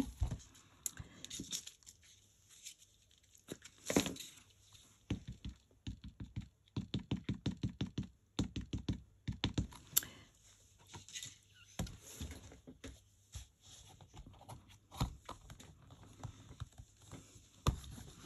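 Light taps, knocks and rustles of hands handling card and a MISTI stamping platform with a clear acrylic stamp, with a quick, even run of taps about six seconds in.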